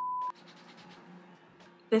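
A short, steady electronic beep lasting about a third of a second, then faint room tone.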